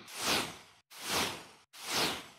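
Whoosh sound effects, three in quick succession, each swelling and falling away in under a second with dead silence cut between them, the third starting near the end.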